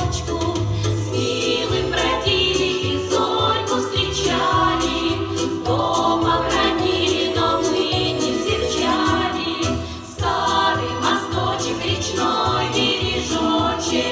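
Women's folk vocal ensemble singing a Russian song in chorus over an instrumental accompaniment with a bass line and a steady beat.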